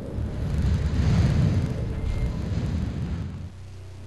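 A deep rumbling noise with a hiss that swells about a second in, giving way near the end to a low, sustained musical drone.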